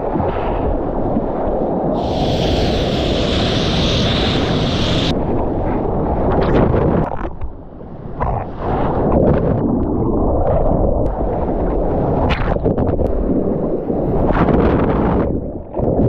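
Rushing and splashing seawater and surf heard on a GoPro action camera held at water level while surfing, with wind buffeting its microphone. Loud throughout, with a brief dip about halfway and churning whitewater near the end.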